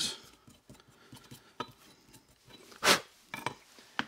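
Small clicks and clinks of concrete grit and a steel pistol slide on a cinder block as loose chunks are brushed off, with one louder brief sound nearly three seconds in.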